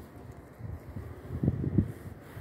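Gloved fingers patting and rubbing soft wet cement onto a cement sculpture: muffled low thumps and scraping, with a quick run of thumps in the second half.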